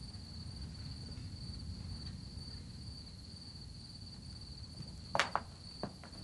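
Crickets chirping in one steady, high, unbroken trill over a faint low hum. Near the end come a few short, sharp knocks.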